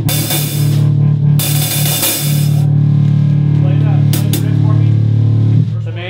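Rock band playing: distorted electric guitar and bass hold one low chord while the drummer hits crash cymbals twice in the first few seconds, letting them ring, with more cymbal strikes about four seconds in. The held chord stops shortly before the end.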